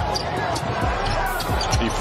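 A basketball dribbled repeatedly on a hardwood court.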